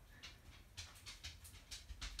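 Near silence: room tone with a few faint, short breathy sounds.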